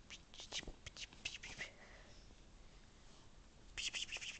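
A person whispering softly close to the microphone: a few short, hissy sounds in the first second and a half, then faint room tone, with more near the end.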